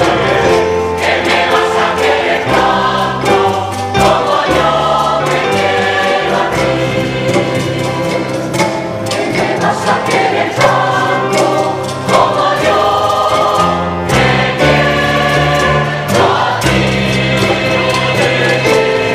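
Mixed choir of men's and women's voices singing a bolero in several parts, moving through held chords with low notes sustained beneath.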